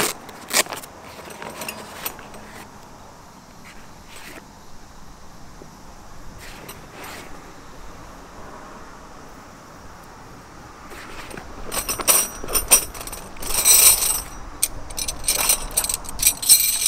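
Metal tent pegs clinking and jangling against each other as a bundle is lifted out of a canvas peg bag. Before that there are only a few light clicks and rustles of the bag; the clinking builds up in the last few seconds.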